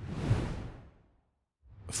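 A whoosh transition sound effect that sweeps in and fades away over about a second, its hiss thinning from the top down. A moment of silence follows, then a short rising swish near the end.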